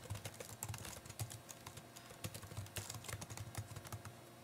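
Typing on a computer keyboard: a quick, irregular run of faint keystroke clicks.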